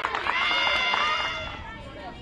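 Several high-pitched voices cheering together in long, drawn-out calls, fading away near the end.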